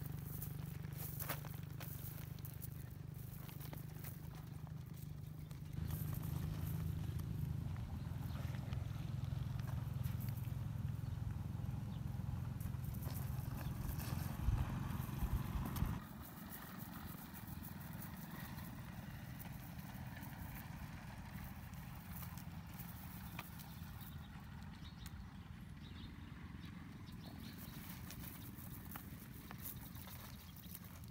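Cast net being lifted and shaken out over a woven plastic sack: rustling of the net mesh and scattered light clicks of its weighted edge, over a low steady rumble that drops away abruptly about sixteen seconds in.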